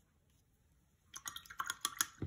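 Paintbrush tapping and working paint in the wells of a watercolour palette while mixing a colour: a quick run of light clicks and taps starting about a second in.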